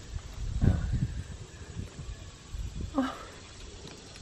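Uneven low rumbling on the microphone, such as wind or handling of a hand-held camera, with a short faint vocal sound about three seconds in.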